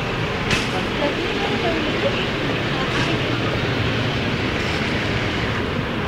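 Steady rumble of a vehicle engine running close by, with scattered voices of people in the street and a sharp click about half a second in.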